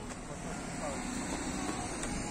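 Outdoor street ambience: indistinct voices of passers-by in the background over a steady low hum.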